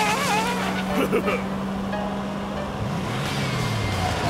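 Cartoon sound effects: a small vehicle's engine hum holds steady, then drops in pitch near the end as it goes by. In the first second a character lets out squeaky wordless yelps over a rushing hiss as leaves spray past.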